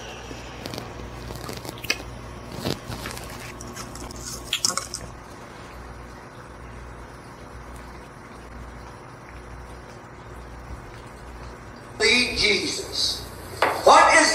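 Candy packaging being opened and handled, with sharp crinkling clicks over the first five seconds and then quieter handling as the sugar-coated gummy worms are tipped out. A loud burst of voice comes in near the end.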